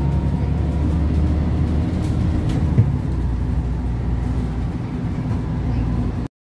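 Steady low rumble of a moving vehicle heard from on board, with one short knock a little before the three-second mark.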